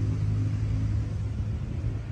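Steady low drone of a running engine.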